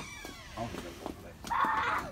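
A young child's voice whining, with a louder, rough cry of about half a second near the end.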